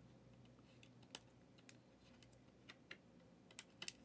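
Faint, sparse clicks of trading cards being handled and slid against one another in the hands: a single tick about a second in, then a few quicker ticks near the end, over near silence.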